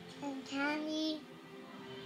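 A toddler's drawn-out, sing-song "um": a short note, then a longer one that rises and holds for about half a second, ending just past the first second.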